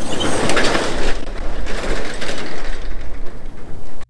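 Metal overhead shop door rolling up, a steady rattling run that cuts off suddenly at the end.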